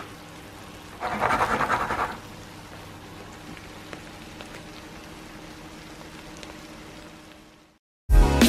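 Grated potato and bacon rösti frying slowly in butter in a nonstick pan, a soft steady sizzle. A louder spell of crackling comes about a second in and lasts about a second, and the sizzle fades out just before the end.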